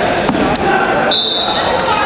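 Chatter of many voices echoing in a gymnasium, with one short steady whistle blast about a second in, lasting just under a second.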